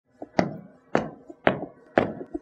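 Sharp knocks in an even beat, about two a second, four of them, with a faint ringing tone beneath: the percussive opening of a soundtrack.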